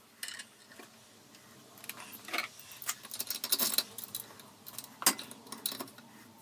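Steel parts clinking and clicking as a small pressed-together live center is clamped in a bench vise and gripped with a pipe wrench to force it apart. A scatter of light metallic clicks, busiest in the second half, with one sharper click about five seconds in.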